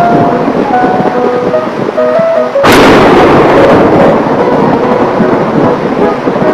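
Thunderstorm sound effect: thunder rumbling over rain, with a sudden loud thunderclap a little under three seconds in that rolls away slowly. A few light musical notes sound over it.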